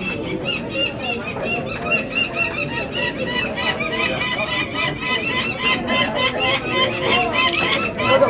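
Peregrine falcon chick calling while being handled: a rapid, unbroken series of short, high, harsh calls, about four or five a second.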